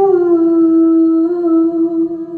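A girl's voice singing one long held note into a handheld microphone, dipping slightly in pitch at first and then held steady, over soft plucked-string backing music.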